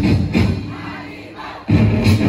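Festival street-dance drum band playing a beat with massed voices of performers and crowd over it. About half a second in, the drumming breaks off and the sound dies away. Near the end the drums crash back in suddenly.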